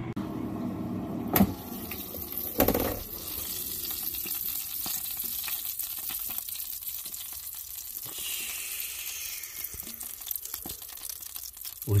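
Seasoned chicken thighs sizzling in an air fryer: a steady high hiss dotted with many small pops. A sharp click comes about a second and a half in, and a short knock follows about a second later.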